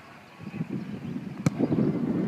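A football struck hard in a shot, one sharp thud about one and a half seconds in, over wind buffeting the microphone.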